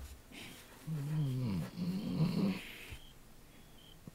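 A sheep bleating once, a low wavering baa that falls in pitch and then rises again, lasting under two seconds.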